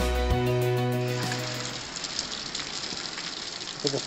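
Background music for about the first second and a half, then a cut to the steady rushing hiss of heavy rain pouring down outside, a torrent of water.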